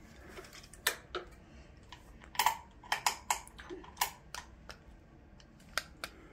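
A dozen or so faint, sharp clicks and taps at irregular intervals, small handling noises.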